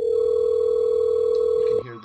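Telephone ringback tone from the softphone as the outgoing call rings through: one loud, steady tone lasting nearly two seconds that cuts off shortly before speech starts.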